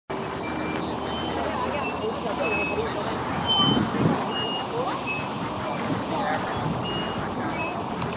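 Outdoor ambience with scattered voices and a steady background hum of traffic. A louder voice-like sound comes in the middle, and short high chirps are scattered throughout.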